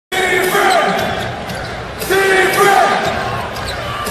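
Basketball dribbled on a hardwood court over steady arena crowd noise. Two held tones, each about a second long, sound near the start and about two seconds in.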